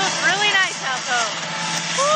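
A woman's voice in a few short, sing-song notes that rise and fall, over a steady rush of wind noise on the microphone.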